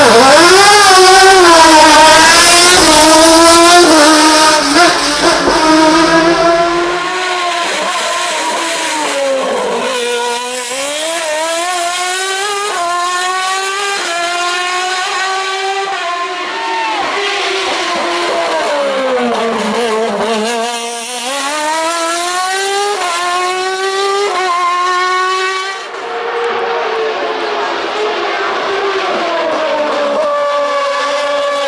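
A single-seater formula race car's engine launching hard from the start line, climbing in pitch through the gears with sharp upshifts; loudest over the first few seconds. It then keeps running up the course, dropping in pitch as it eases off for corners about ten and twenty seconds in and rising again as it accelerates away.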